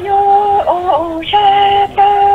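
A solo voice singing Hmong kwv txhiaj, the traditional sung poetry: long held notes with brief sliding turns between them.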